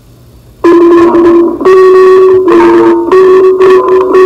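Loud instrumental music that starts suddenly about half a second in, after faint hiss, with held notes changing pitch every second or so.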